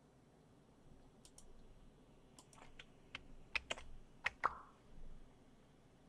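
Computer keyboard typing: an uneven run of key clicks, closest together and loudest in the middle, then stopping.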